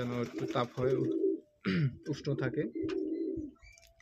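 Domestic pigeons cooing in their loft: two long, warbling coo phrases with a short break between them.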